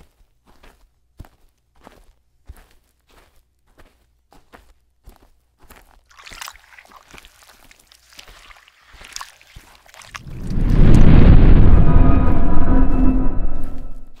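Faint, irregular taps for about ten seconds, then a loud low rumbling noise with a faint held tone that fills the last few seconds and stops just before the end.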